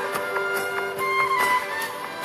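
Bansuri (bamboo transverse flute) playing a melody of held and gently bending notes over a band backing with a steady held low note and regular percussion strikes.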